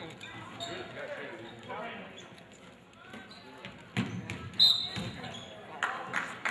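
Basketball game in a school gym: crowd voices with ball bounces on the hardwood and a sharp knock about four seconds in. Just after it comes a short, loud referee's whistle blast, stopping play for a foul.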